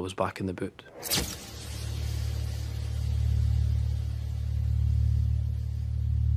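The end of a spoken line, then a short sharp hit about a second in, followed by a low, steady drone that slowly swells and fades a little.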